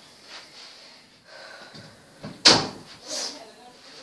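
A door banging shut once, loudly, about two and a half seconds in, amid faint voices and movement in the room.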